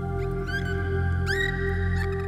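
Dolphin whistles over calm ambient new-age music of sustained tones. Two whistles sweep up in pitch about a second apart, each ending in a held note.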